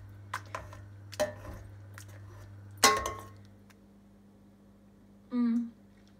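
A metal potato masher knocking and clinking against a stainless steel pot while squash and potato soup is mashed, with a few scattered strikes. The loudest strike comes about three seconds in and rings briefly.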